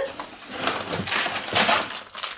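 Kraft-paper bag rustling and a plastic bag crinkling as a hand rummages in the paper bag and pulls out a bag of peas. The crackling starts about half a second in.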